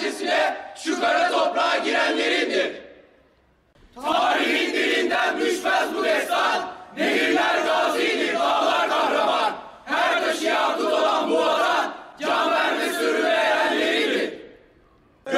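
A chorus of teenage boys reciting a poem in unison, loud spoken phrases of two to three seconds each with short breaks between them and a longer pause about three seconds in.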